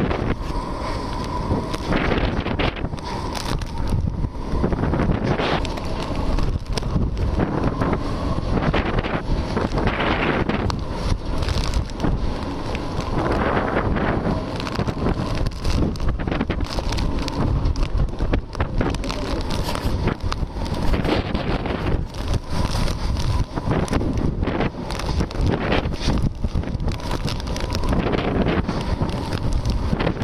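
Cyclone-force wind blowing hard across the microphone in uneven gusts, with no letup.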